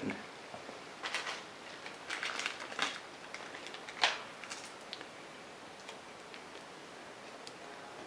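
Faint plastic clicks and rustling as small air filters are fitted into the top ports of a continuous ink system's external ink reservoirs in place of their small plugs, with one sharper click about four seconds in.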